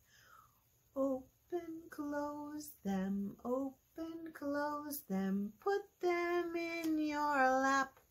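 A woman singing a children's hand rhyme very slowly, drawing out each phrase, with a long held line near the end that slides down in pitch.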